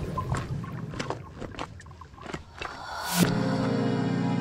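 Background music changing tracks: a bass-heavy passage cuts out, leaving a quieter stretch of sharp clicks about four a second, then a short rising whoosh brings in a new track of sustained, held tones.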